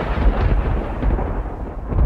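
A loud, dense rumbling noise with heavy deep bass, a thunder-like sound effect in the podcast's closing ident.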